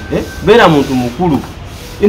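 Speech: a man talking, pausing near the end.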